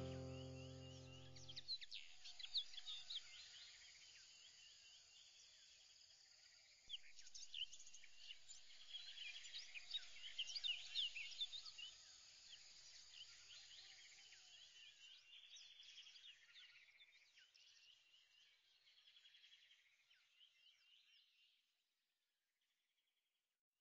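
Faint chorus of many small birds chirping over a soft outdoor hush, busiest in the middle and fading out toward the end. Music ends about a second and a half in.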